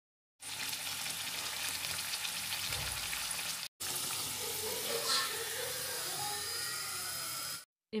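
Aloo kachori deep-frying in hot oil in a kadhai: a steady, crackling sizzle. It breaks off for a moment a little past halfway, then carries on until just before the end.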